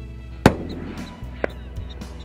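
A single rifle shot about half a second in, with a trailing echo, over steady background music. A fainter sharp crack follows about a second later.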